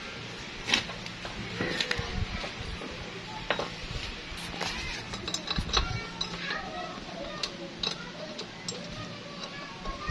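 Metal hand tools at work: a ratchet wrench and bolt being fitted under a scooter to mount a stainless side stand, giving sharp metallic clicks and clinks at irregular intervals. Faint voices or a radio sound in the background.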